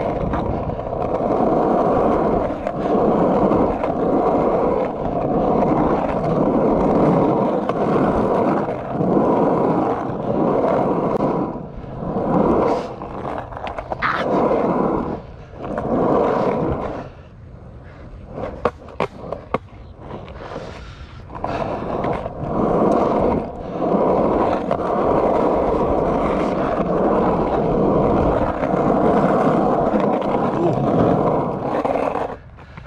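Skateboard wheels rolling over the asphalt of a pump track, a loud continuous rolling noise that rises and falls in loudness as the rider pumps through the rollers and berms. It drops quieter for a few seconds past the middle, with a few sharp clacks.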